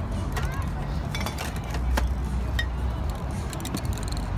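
Outdoor street ambience: a steady low rumble of wind or traffic with faint background voices. Small clicks and clinks are scattered through it, from the painting lids and cans being handled.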